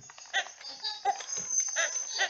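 Animatronic toy chimpanzee laughing: a quick run of short, high-pitched laughing calls, about three a second, starting about a third of a second in.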